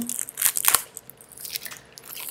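Packaging of a new tarot deck being handled: a burst of crinkling and rustling with a sharp click partway through, then quieter handling noise.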